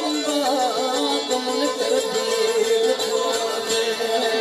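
Saraiki folk music: a steady held drone under a wavering, ornamented melody line.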